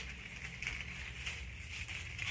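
Dried flower stems and papery foliage rustling and crackling as they are handled and pushed into a hand-held bouquet, over a low steady room hum.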